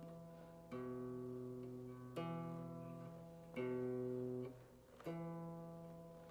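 Semi-hollow electric guitar, capoed at the second fret, fingerpicked: four single bass notes about one and a half seconds apart, alternating between D and A, each left to ring and fade. This is the basic alternating-bass pattern of the song.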